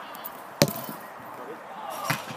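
A single sharp thud of a football being kicked, about half a second in.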